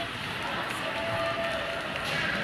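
Ice hockey play heard from the stands: skates scraping on the ice under a steady wash of rink noise, with a player's held shout about a second in.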